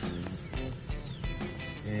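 Background music with a regular beat.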